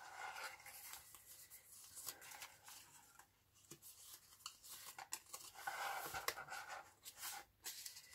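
Faint rustling and light taps of small cut-out paper labels being shuffled through by hand, with a slightly louder rustle about six seconds in.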